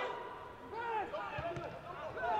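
Footballers' shouts and calls on the pitch, heard faintly, with a single dull thud of a ball being kicked about one and a half seconds in.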